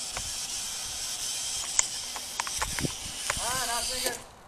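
Mini quadcopter's motors and propellers running, a steady high-pitched whir that cuts off abruptly at the very end, with a few sharp clicks along the way.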